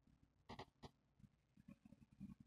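Near silence, broken by two faint, very short noises about half a second and just under a second in.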